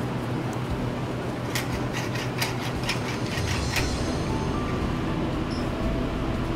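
A metal spoon stirring soup in a stainless steel pot, with light clicks and scrapes about one and a half to four seconds in, over a steady low hum.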